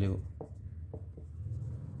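Marker pen writing on a sheet, a few short faint strokes over a low steady hum.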